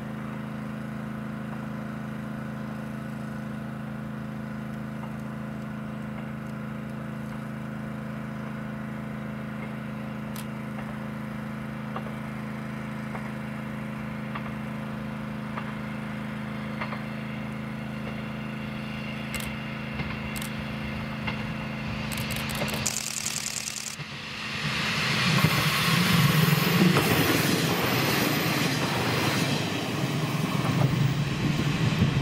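Diesel local train running toward the camera. A steady low drone slowly grows louder, then engine and wheel noise rise sharply as it passes close by about 24 seconds in.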